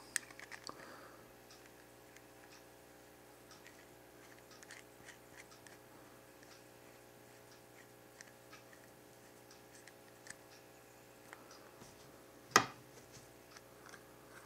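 Faint small metallic clicks and scrapes of a rebuildable dripping atomizer being handled and screwed onto a mechanical mod's threads, with one sharp click about twelve and a half seconds in.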